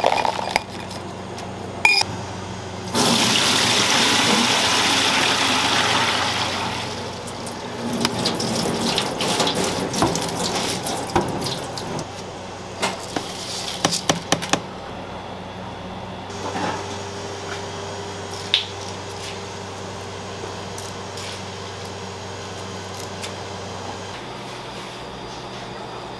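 Kitchen food prep: water running hard for about four seconds, then rustling and scattered clicks as gloved hands work wet glutinous rice in a plastic tub. A quieter steady hum follows.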